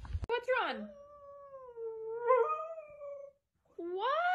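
Siberian husky 'talking': a short rising-and-falling cry, then one long held, wavering call lasting over two seconds.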